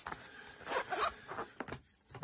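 Zipper on a soft fabric lock pick case being run along its track: a rasping slide, loudest in the middle, that stops shortly before the end.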